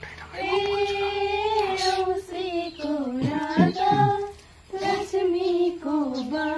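A group of girls singing a Bhailo (Tihar festival greeting song) together in long held phrases, pausing briefly near the end before the next line.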